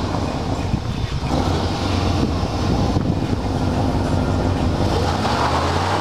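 Chevrolet Suburban 2500's engine running with a steady low hum as the truck rolls slowly forward.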